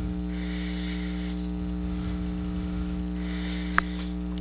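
Steady electrical mains hum, a constant low buzz with a stack of overtones, with a single sharp click near the end.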